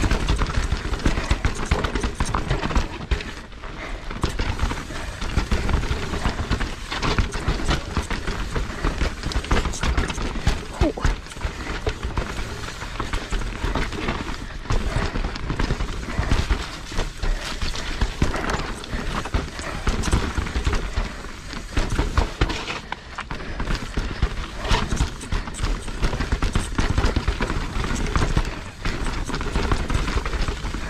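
A downhill mountain bike clattering over a rough, rocky trail. Tyres crunch over dirt and stones, and the frame and chain knock and rattle in dense, irregular bursts over a low rumble.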